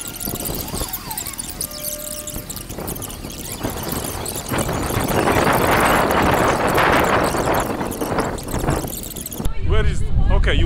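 Fast-forwarded street recording: talking voices and street noise sped up into a high-pitched, squeaky jumble. It grows louder and denser about halfway through.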